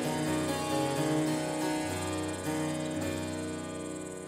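Baroque music with harpsichord over a held bass line, gradually fading toward the end.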